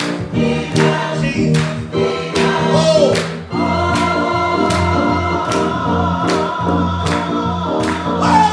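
Live gospel music: a few singers with keyboard accompaniment over a steady beat, about one stroke every three-quarters of a second.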